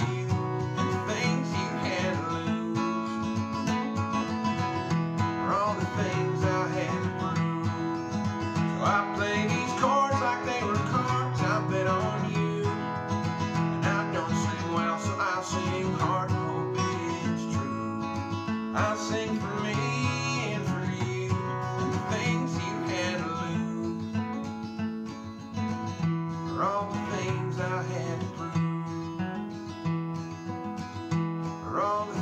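Steel-string dreadnought acoustic guitar strumming chords in a steady rhythm, a little softer in the last few seconds.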